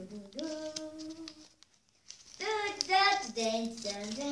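A girl singing in long held notes, breaking off about a second and a half in, then singing again more loudly from about two seconds in.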